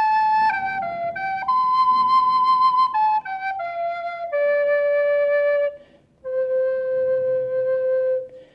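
Music: a slow solo flute-like melody of single held notes. It rises once, then steps downward, breaks off briefly about six seconds in, and ends on one long low note.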